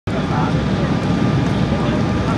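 Steady cabin noise of an Embraer 170 descending on approach: the deep, even roar of its twin GE CF34-8E turbofans and the airflow, heard from inside the passenger cabin, with voices faintly over it.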